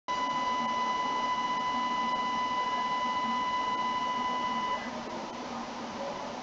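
A steady electronic beep tone, one unchanging pitch, over a constant hiss. It cuts off suddenly about three quarters of the way in, leaving the hiss alone.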